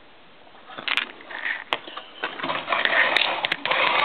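Handling noise from a small telephone dial circuit board and its ribbon wire being moved about: irregular crackling, scraping and sharp clicks, starting about a second in and getting busier and louder about halfway.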